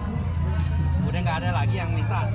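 Indistinct voices of people talking over background music with a steady low bass line.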